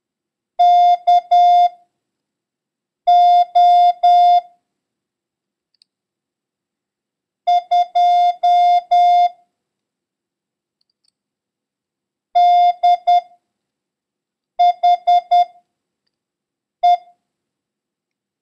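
Morse code practice signal: one steady beep tone keyed on and off in dots and dashes. It sends six characters of a random-character copying run, with gaps of one to four seconds between them. The last character is a single dash.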